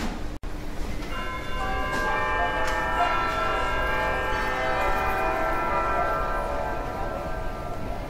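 A held electronic chord of many steady ringing tones, entering one after another just after a second in, holding, and fading away near the end; a brief cut-out to silence comes just before it.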